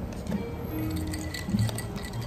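Background music, with the faint crinkle and small clicks of a snack packet being torn open by hand.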